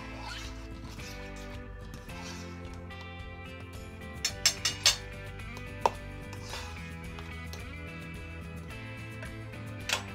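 Background music, with metal utensils clinking against a stainless steel mixing bowl while egg-yolk filling is stirred: a quick run of four clinks about four seconds in and a single clink a second later.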